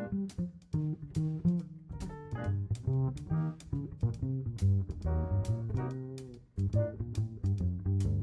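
Live jazz band playing an instrumental passage: a line of quick pitched notes over a moving bass line, with regular sharp strokes keeping time and a brief drop in level about two-thirds of the way in.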